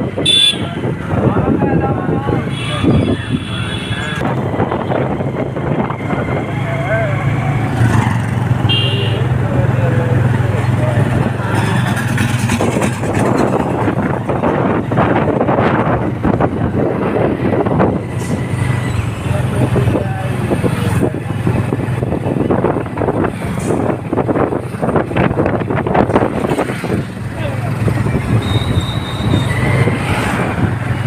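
Motorcycle engine running steadily while riding through street traffic, with short vehicle horn toots a few times.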